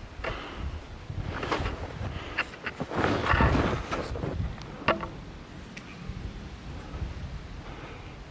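Wind buffeting the microphone, a steady low rumble broken by louder gusts and rustling bursts that peak about three seconds in, then settle.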